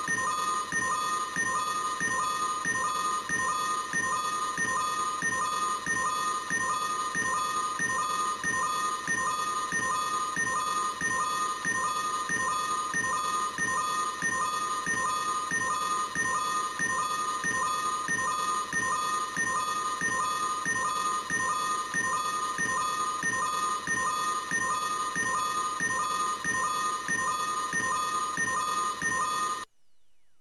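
Ultraman Trigger Power Type Key (Premium) toy playing a looping electronic standby sound through its small speaker after its top button is pressed: a pattern of electronic tones repeating evenly over and over, cutting off suddenly just before the end.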